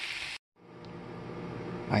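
Ribeye steaks, onions and garlic frying in butter in a cast-iron skillet, a steady sizzle that cuts off abruptly less than half a second in. After a moment of silence, only a faint steady low hum remains.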